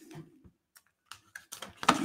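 Cardstock card being handled: a few light clicks and taps as the card is lifted off the table and folded, the sharpest just before the end.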